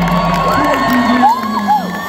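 Concert crowd cheering, with several whoops that rise and fall in pitch. The band's music thins out underneath, its low end dropping away about halfway through.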